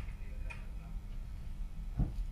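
Quiet office room tone: a steady low hum with a couple of faint clicks about half a second apart near the start.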